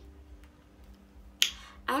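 A single sharp click about a second and a half in, after a short quiet pause over a faint steady hum.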